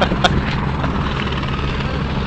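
Helicopter running, heard as a steady low drone.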